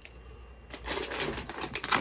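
Plastic candy wrappers crinkling and rustling as packs are handled, a run of small crackles that gets busier in the second half.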